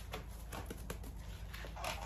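A few faint, light clicks and taps of a paintbrush handled in a small plastic container of primer, over a steady low hum.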